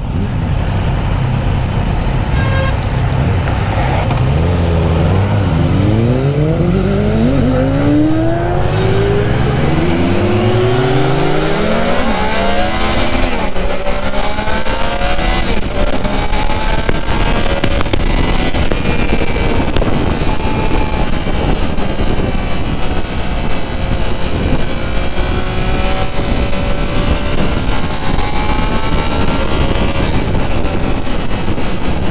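Triumph Trident 660's inline three-cylinder engine at low revs, then accelerating up through the gears in several rising sweeps of pitch, then running steadily at cruising speed with wind noise over the microphone.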